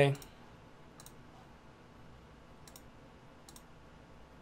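Three faint, sharp computer mouse clicks, spaced apart, over low room tone.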